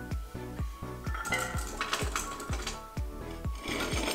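Background music with a steady beat. From about a second in, chopped carrots clatter out of a bowl into an empty stainless steel stockpot for about two seconds.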